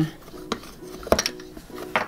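Plastic Play-Doh toy hammer tapping down on the dough, a few sharp plastic clicks and knocks, over faint background music.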